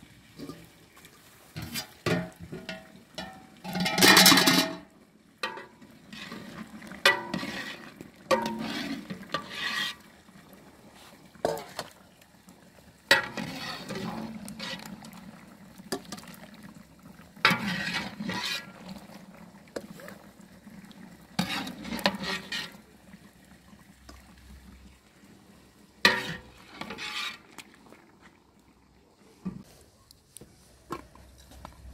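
Metal ladle knocking and scraping against a large cooking pot and a metal bowl as boiled mushrooms are scooped out: a run of separate clanks with pauses between, the loudest and most ringing about four seconds in.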